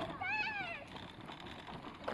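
A young child's high-pitched squeal: one drawn-out note that rises and then falls, lasting about half a second, early in the first second.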